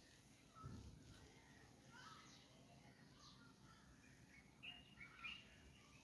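Near silence, with faint, scattered bird chirps that come closer together near the end, and one soft low thump about half a second in.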